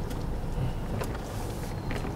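Steady low rumble of a car heard from inside the cabin: engine and road noise, with a couple of faint clicks about a second in and near the end.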